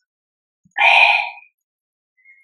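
A woman's voice saying one short word, about half a second long, about a second in.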